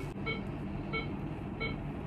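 Electronic alarm of a bedside medical device, such as an infusion pump or patient monitor, beeping: short, even beeps about three a second.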